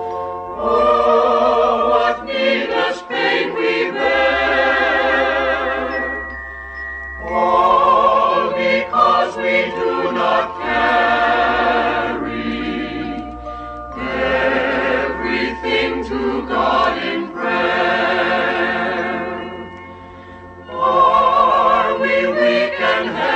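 Choir singing a slow hymn with vibrato, in long held phrases separated by short breaths, over a low sustained bass accompaniment.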